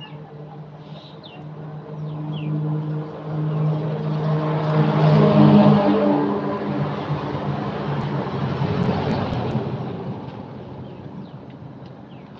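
Engine hum with a steady low drone that builds to a peak about five seconds in and fades away by about ten seconds, as of a motor vehicle passing by.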